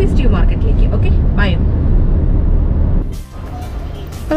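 Steady low road and engine rumble heard inside a moving car's cabin, with a few brief fragments of a woman's voice over it. The rumble cuts off abruptly about three seconds in.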